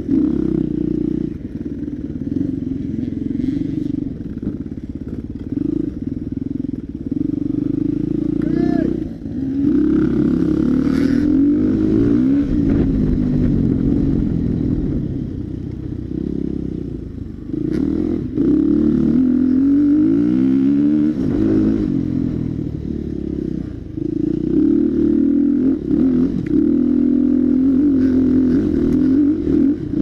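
KTM dirt bike engine heard up close, revving up and down over and over as the throttle is opened and closed through the gears, with a few brief drops where it comes off the throttle.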